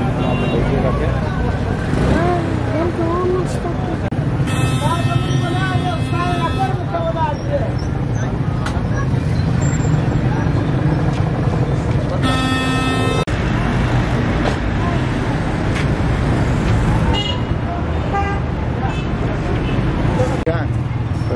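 Busy street-market ambience: a steady traffic rumble and voices, with a vehicle horn sounding twice. The first is a long blast of about two seconds, starting about four seconds in; the second is a shorter one of about a second, around twelve seconds in.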